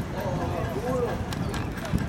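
Hoofbeats of a racehorse galloping on a dirt track, under people talking, with a sharp knock near the end.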